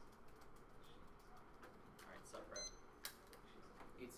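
Faint laptop keyboard typing: scattered key clicks in a quiet room, with a brief low murmur of voice and a short high electronic beep a little past halfway.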